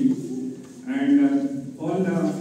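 A man's voice speaking into a handheld microphone, with a short pause just after the start and a drawn-out sound in the middle.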